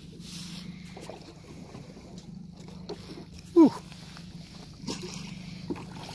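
Yamaha outboard motor running steadily, a low even hum under faint wind and water noise.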